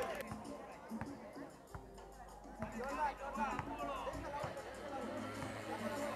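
Faint chatter of spectators around the court, with quiet background music.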